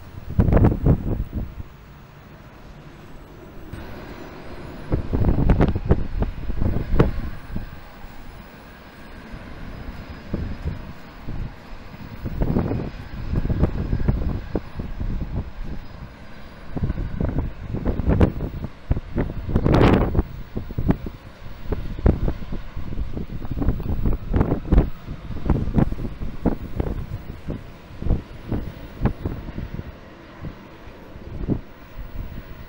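Wind gusting across the microphone in uneven rushes, strongest about two-thirds of the way through, over the distant rumble and faint steady whine of jet airliner engines.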